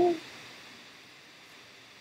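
The end of a spoken word just at the start, then faint, steady room hiss with no other sound.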